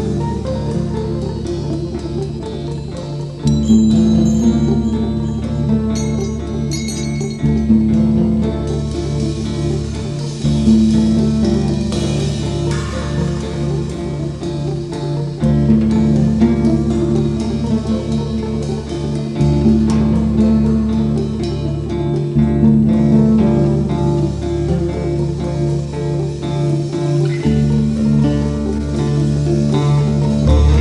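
A rock band playing live, electric guitar and bass guitar to the fore, the bass moving to a new held note every three or four seconds.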